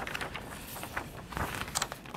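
A large glossy paper poster rustling as it is unfolded and spread out, with a few soft crackles.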